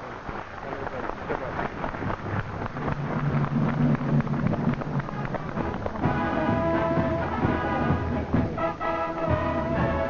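Symphonic wind band music: a dense, rumbling opening gives way to sustained low brass chords about three seconds in, and higher held brass chords join about six seconds in.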